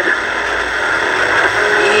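Steady hiss and noise of an AM radio broadcast played through the speaker of a Top House GH-413MUC portable boombox, in a gap between the preacher's words.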